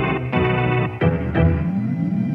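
Sample-based boom bap hip-hop instrumental: chopped sampled chords over a deep bass, the chords cutting off and restarting about every half second.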